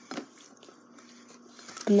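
A short pause in speech: faint room tone with a soft mouth click just after the start, then the boy's voice starts again near the end.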